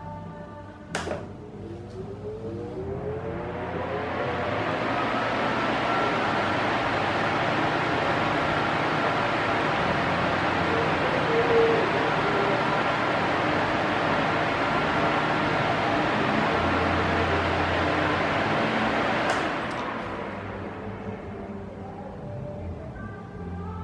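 Arno Silence Force 40 cm pedestal fan switched on with a click about a second in, its rushing air noise building over a few seconds as the blades spin up, then running steadily. Near the end there is another click and the fan noise falls away. Music with singing from outside is faintly heard beneath it, mostly masked by the fan.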